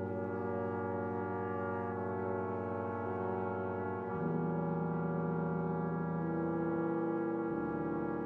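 Brass quintet of two trumpets, French horn, trombone and tuba playing slow, sustained chords, changing to a new chord about four seconds in and again near the end.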